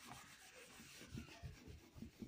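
A cloth rubbing across a whiteboard, wiping off marker writing: a faint, steady scrubbing with a few soft knocks in the second half.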